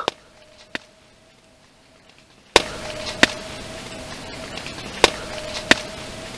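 A faint, distant, steady wail or drone held on one tone, boosted in volume so that the background hiss jumps up about two and a half seconds in, with a few sharp ticks on top. It sounds like a deep, spectral cry from the forest, but the recordist suspects an industrial source: a big working machine or a train from the nearby city.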